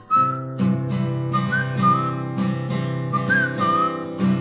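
Instrumental break in a lo-fi folk song: a whistled melody over steadily strummed acoustic guitar.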